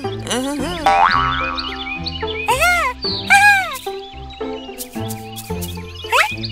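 Cheerful children's cartoon background music with springy, boing-like comic sound effects: a rising glide about a second in, a falling one around three seconds, and two bouncy arched tones just before and after it.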